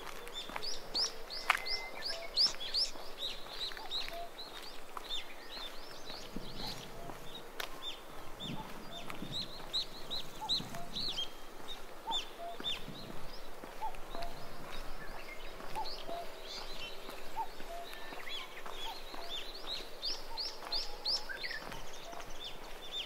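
A bird singing phrases of quick, high notes that each slur downward, the phrase coming back every several seconds.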